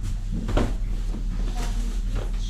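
Denim jeans being dropped and laid flat on a table. There is a short handling sound about half a second in and a lighter brush near the end, over a steady low electrical hum.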